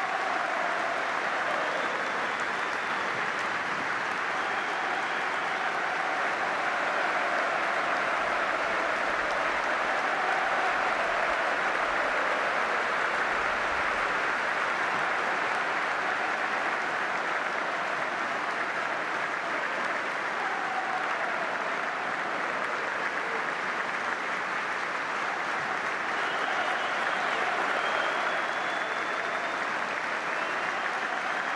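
Large football stadium crowd clapping steadily and unbroken: a minute's applause held as a tribute.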